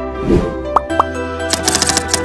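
Intro-animation sound effects over steady background music: a soft plop about a third of a second in and two short rising pops, then a quick run of keyboard-typing clicks in the last half second.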